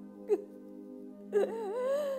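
A woman's voice in a drawn-out, wavering wail over soft background music of held notes. A short vocal sound comes about a third of a second in, and the long wail begins about halfway through.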